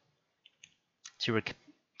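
A pause in a man's reading voice, broken by two faint clicks about half a second in, then the voice resumes with a stumbled start, "To, re—".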